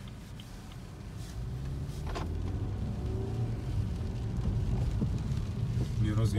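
Engine and road noise heard inside the cabin of a 2016 BMW F30 3 Series on the move: a steady low hum that grows gradually louder, with a single click about two seconds in.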